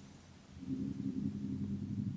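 A faint low rumble that starts about half a second in and fades near the end.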